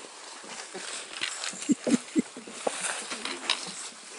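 Hikers' footsteps crunching irregularly through dry fallen leaves, with a few sharper crackles near the middle.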